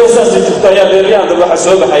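A man's voice through a handheld microphone, chanting in long drawn-out notes.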